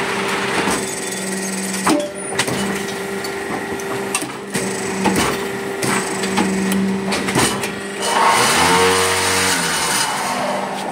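Fly ash brick making machine running, with a steady hum and scattered metallic knocks and clanks. Near the end, a louder pulsing buzz lasts about two seconds.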